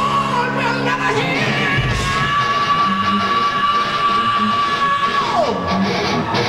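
Progressive metal band playing live in a large hall: full band sound with one long, high sustained note held for about four seconds that then slides sharply down near the end.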